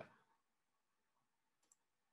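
Near silence, with one faint, short click near the end from advancing a presentation slide.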